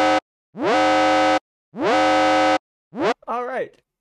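Electronic alarm sound effect: a buzzing, distorted siren tone in repeated blasts about a second apart, each sliding up in pitch and then holding before cutting off. It breaks off about three seconds in, and a voice follows near the end.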